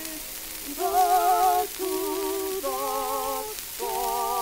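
Soprano and tenor duet on a 1900 acoustic recording: held sung notes with a wide vibrato, about a second each with short breaks between them, over the steady hiss and crackle of the old record's surface noise.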